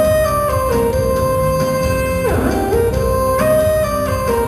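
Instrumental song introduction on an electronic keyboard with an acoustic guitar, a melody of held notes that step up and down in pitch.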